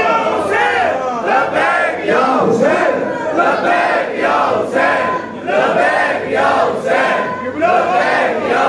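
A crowd of men shouting together in unison, short loud calls repeated over and over in quick succession.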